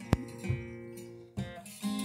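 Acoustic guitar being played: a sharp click just after the start, then a few chords plucked in turn and left to ring.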